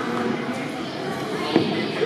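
Indistinct chatter of many children and adults in a large gymnasium, with one sharp thud about one and a half seconds in.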